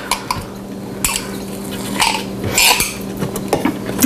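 A utensil scraping and clinking inside a jar as thick, dry tahini is dug out and dropped into a food processor bowl, with a steady low hum underneath.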